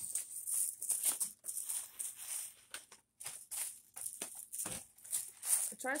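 Plastic packaging crinkling and rustling in short, irregular rustles as a wig is handled and taken out of it.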